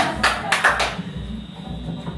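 A small audience clapping in a live-music room, the claps thinning out about a second in, over a low, evenly repeating beat.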